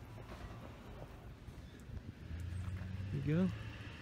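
Faint outdoor background noise, then a steady low engine hum starts a little over halfway through and keeps on.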